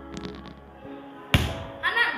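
A basketball bouncing once on a tiled floor: a single sharp thud about two-thirds of the way in, over background music. A girl's voice starts just before the end.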